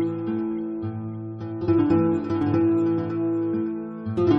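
Calm instrumental music on acoustic guitar: a few plucked notes and chords, each left ringing.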